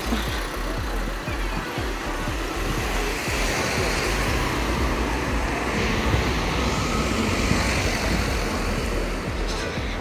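Street traffic on a busy town street: cars driving past, a steady mix of engine hum and tyre noise.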